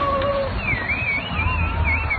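Low rumble of skateboard wheels rolling over asphalt, with a high, wavering whistle-like tone starting about half a second in.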